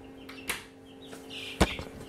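Two sharp clicks, a small one about half a second in and a louder one about a second later, over a steady low hum.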